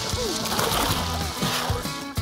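Background music with splashing water as a person wades quickly into shallow lake water.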